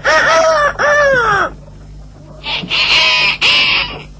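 Cartoon rooster crowing, a short call and then a long one that arches up and falls away. About two and a half seconds in comes a harsh, noisy bird squawk.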